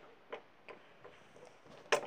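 Quiet room with a few faint clicks and one sharp click just before the end.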